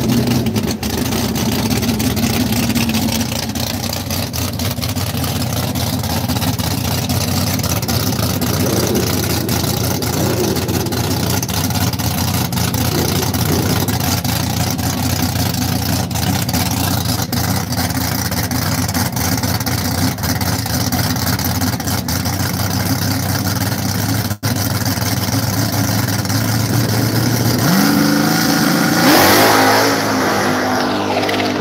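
First-generation Chevrolet Camaro drag car's engine running at a steady idle while staging. Near the end it revs up sharply with a rising pitch as the car launches off the line.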